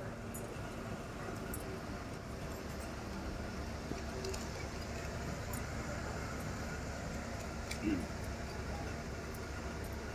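Steady low background rumble of an open-air gathering sitting in silence, with a few faint clicks and a short sliding sound about eight seconds in.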